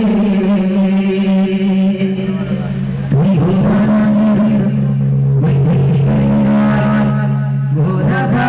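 A man singing through a public-address system, holding long steady notes with short breaks about three and five and a half seconds in.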